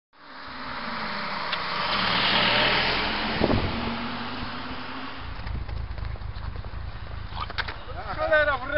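A motor vehicle on the road: a car's running noise swells to a peak about two and a half seconds in and fades, with a sharp knock a second later and a low rumble in the last few seconds.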